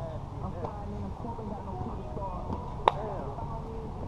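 Players' voices in an outdoor basketball game, broken once about three seconds in by a single sharp, ringing impact of the basketball, the loudest sound here.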